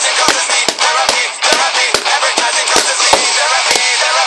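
A drum kit played along to a recorded song with singing: kick-drum strokes about two or three times a second under a steady wash of cymbals.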